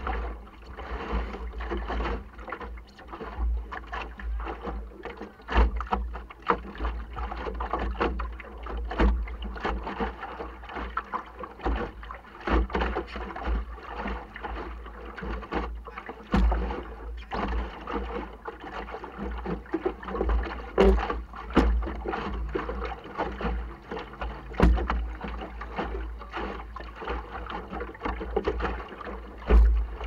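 Water splashing and slapping against the hull of a small sailing dinghy under way on choppy water, with irregular knocks from the hull and rigging over a steady low rumble.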